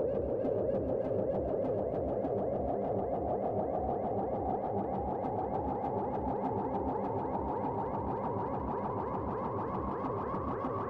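Ambient electronic music from hardware synthesizers: a dense, rapidly pulsing sequence washed in reverb and delay, its tone slowly brightening and rising as a filter opens over several seconds.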